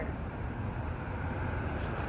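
Steady low rumble of city street background noise, with no distinct events.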